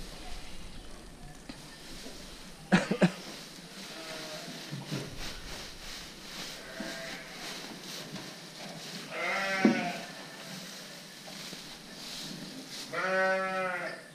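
Sheep bleating several times, the loudest call about nine and a half seconds in and a long bleat near the end. Two sharp knocks come about three seconds in.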